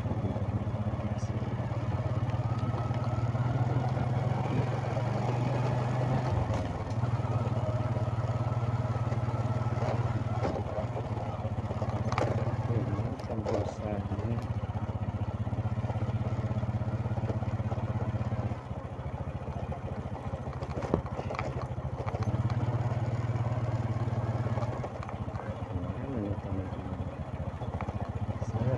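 Motorcycle engine running steadily while riding. About two-thirds through, the engine note drops and the sound softens; a few seconds later it picks up again. One sharp knock comes just after the drop.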